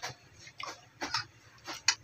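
Eating sounds of a person tasting hot lentil curry with a spoon from a small glass bowl: soft, irregular clicks and smacks, about three a second.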